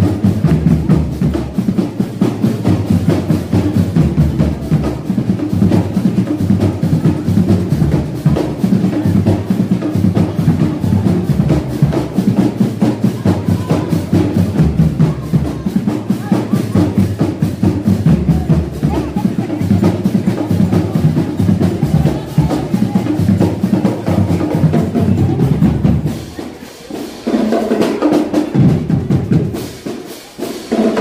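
Marching band drum line playing a fast, driving cadence of snare and bass drums. About 26 s in, the bass drums drop out and the level dips, leaving a lighter, higher passage before the beat picks up again.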